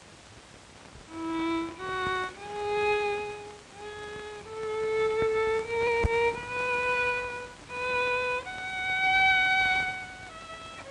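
Solo violin played slowly, one held note at a time, in a climbing melody with short breaks between notes after about a second of quiet. The violinist's hand is permanently injured, and the playing is judged no longer what it was.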